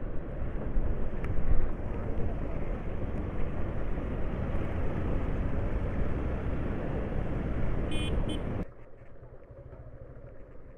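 Steady wind and road rumble with the motorcycle running, heard through a handlebar-mounted phone's microphone while riding through town. A horn beeps twice briefly near the end, and then the sound drops suddenly to a much quieter background.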